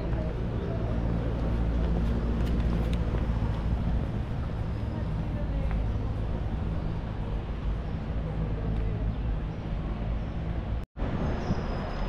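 City street ambience: steady traffic with an engine's low hum, and passers-by talking indistinctly. The sound cuts out for a moment near the end.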